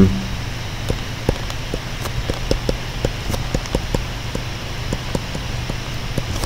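Stylus tapping and clicking on a tablet screen during handwriting: irregular light taps, a few a second, over a steady low hum.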